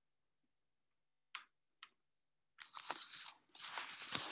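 Two sharp clicks about a second and a half in, then rustling, crunching noise from something being handled, stopping briefly and starting again.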